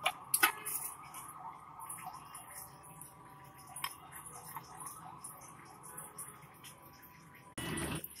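A few faint clicks of a metal spoon against a ceramic plate as chutney is served, over a low steady background hum.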